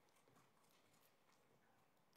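Near silence: a pause in the room, with no audible sound.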